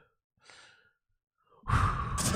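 A man's short, breathy sigh, with no voice in it. Near the end a much louder burst of sound cuts in.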